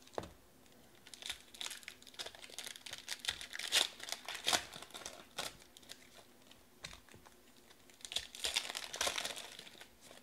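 Foil trading-card pack wrappers crinkling and tearing as packs are opened and handled, with light clicks of cards against each other. The crackling comes in two spells, one through the first half and a shorter one near the end.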